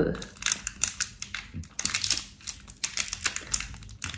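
Plastic packaging of a wax melt crinkling and crackling as it is handled and picked at with long fingernails, a dense run of quick irregular clicks.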